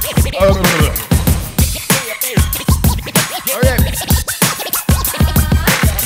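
Hip hop beat with turntable scratching: a record worked back and forth under the needle, giving quick rising and falling pitch sweeps over a steady beat.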